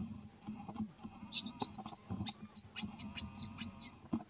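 Baby monkey crying: a run of repeated high-pitched squealing calls starting about a second and a half in, over soft rustling and thumps of movement.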